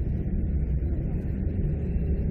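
Steady low hum and hiss, the background noise of the lecture recording, with no distinct event.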